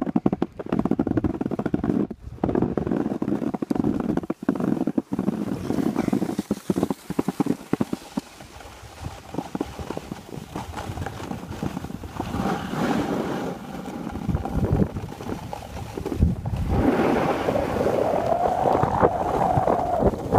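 Skis sliding and scraping over packed snow, with wind rushing over the microphone as the skier moves downhill. The scraping is choppy and louder at first, eases off in the middle and builds again near the end.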